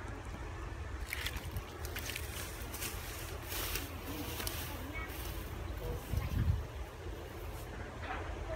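Wind buffeting the microphone with a steady low rumble, and rustling as someone walks past close by through tall grass. A heavier low bump about six seconds in.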